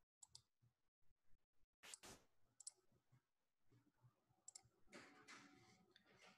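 Near silence with a few faint, sharp computer mouse clicks, the clearest about two seconds in, and a short soft rustle about five seconds in.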